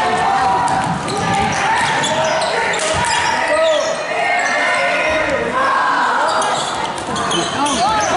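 Basketball bouncing on a hardwood gym floor during live play, mixed with spectators' voices, all echoing in a large gymnasium.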